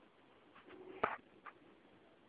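A Maine Coon cat's short, low trill, cut off by a sharp knock about a second in, with a lighter click half a second later.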